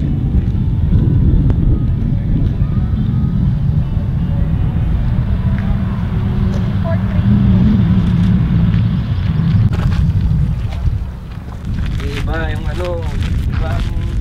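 Wind buffeting the microphone: a loud, steady low rumble that eases off about eleven seconds in, with voices talking near the end.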